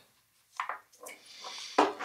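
Small bench vise being tightened on a 1/4" plug: a light clunk about half a second in, then soft rubbing and handling of tools on the wooden bench, and another short click near the end.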